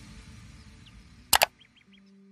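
Outro sound effects: a fading music tail, then a sharp double click like a mouse button about two-thirds of the way in, followed by three short quick chirps.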